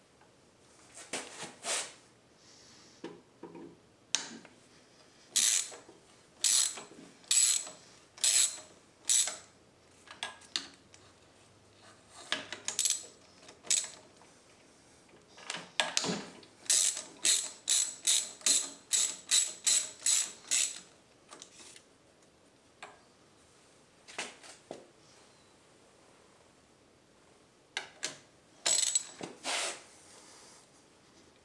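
Hand socket ratchet clicking in short bursts as the alternator's base bolts are loosened. The bursts come about a second apart at first, then quicker, about three a second, midway through.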